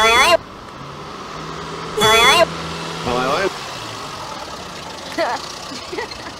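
Small car's engine running with a steady low hum as the yellow Fiat Cinquecento drives up and comes to a stop. A voice cries out at the very start and again about two seconds in.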